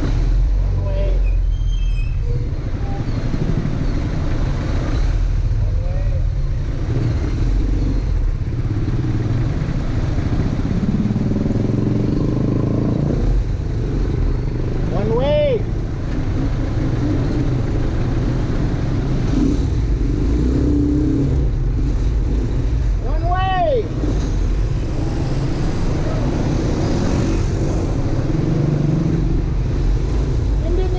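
Motorcycle tricycle running along a street, heard from inside its passenger sidecar: a steady low engine and road rumble. Two short tones rise and fall in pitch, one about halfway through and one about eight seconds later.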